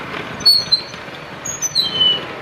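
Birds chirping: a few short, high chirps about half a second in, then a cluster of chirps ending in a falling note near the end, over a steady background hiss.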